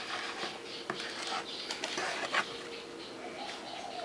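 Quiet kitchen handling: a few light clicks and knocks as hands and a wooden spoon work at the rim and contents of a mixing bowl, over low room noise with a faint steady hum.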